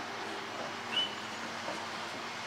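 Quiet outdoor background with a faint steady low hum and a single short, high chirp about halfway through.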